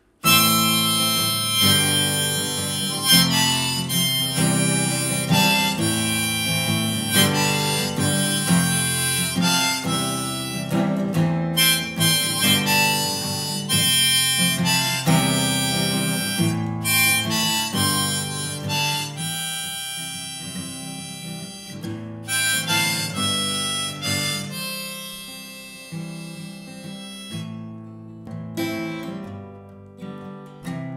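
Harmonica solo played over strummed steel-string acoustic guitar, the harmonica held in a neck rack. The music comes in abruptly after a brief pause and grows quieter over the last few seconds.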